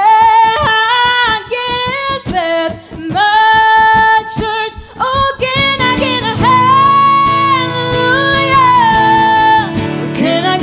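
A woman singing a country song live, holding long notes, over two strummed acoustic guitars. Her voice comes in right at the start, and a long held note runs from about six seconds in until just before the end.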